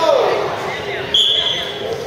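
Referee's whistle blown once, a single steady high blast of about three quarters of a second starting a bit over a second in, signalling the start of a wrestling bout. Voices chatter in the echoing gym around it.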